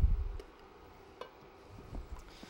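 Cookware being handled on a countertop burner: a dull low thump at the start, then a faint click about a second in and a soft knock near the end as a lid is set down on a pan.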